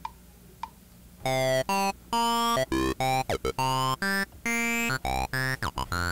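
Sunrizer software synthesizer playing its 'Comb Ride' arpeggio preset at 103 BPM: short, bright pitched notes in a quick stepping pattern start about a second in. Before that come two faint ticks in time with the beat.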